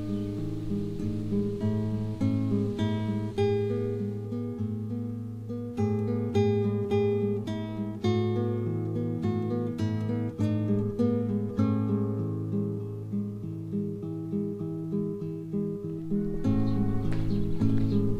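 Background music: an acoustic guitar picking a run of single notes over a sustained low note.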